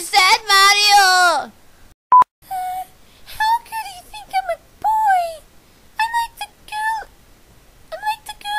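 A high, drawn-out dubbed voice crying "no" falls away about a second and a half in. About two seconds in comes a short, single-pitch beep like a censor bleep, and then a run of short, very high, squeaky voice calls.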